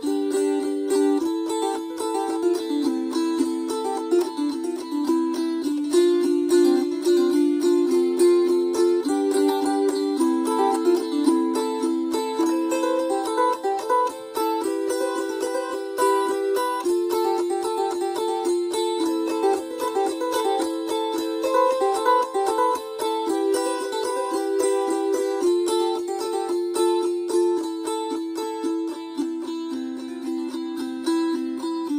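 Wing-shaped gusli (Baltic psaltery) strummed rapidly and continuously, the left-hand fingers closing off strings to change the chord every second or two. The playing is improvised from a set of chords.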